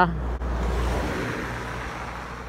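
A van overtaking close by: engine and tyre noise swell about half a second in, then fade slowly as it pulls away ahead.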